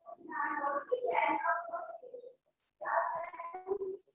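Voices heard over a video call, in short phrases broken by sudden dead-silent gaps; the words are not made out.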